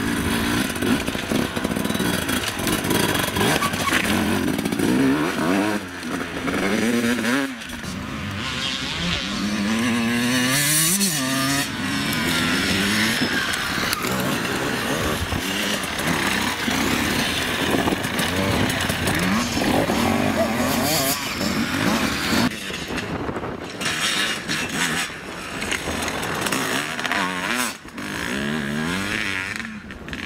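Enduro dirt-bike engines revving up and down as the bikes climb over rough, rocky trail, the pitch rising and falling with each burst of throttle. Several bikes are heard in turn, and the sound changes abruptly a few times.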